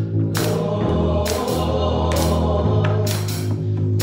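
Live gospel worship music: a woman singing lead into a microphone with other voices joining, over an electric bass guitar holding long low notes.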